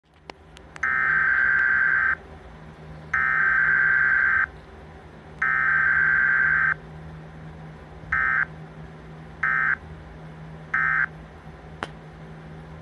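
Emergency Alert System digital header tones played through a television speaker: three long screeching data bursts about a second apart, then three short ones, over a steady low hum. This is the coded start of a National Weather Service required monthly test.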